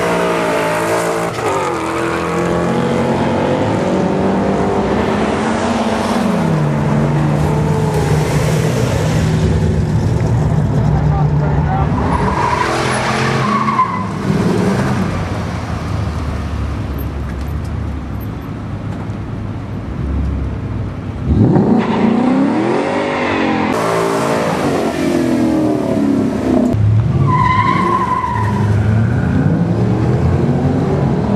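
Ford Mustang 5.0-litre V8 engines at a drag strip: cars accelerating down the track and passing, with engine pitch held steady for a stretch in the middle and rising sharply in two hard revs or launches in the second half.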